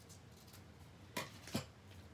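Scissors trimming the edge of a small kraft paper bag: two short snips about a second in, a third of a second apart, over faint room tone.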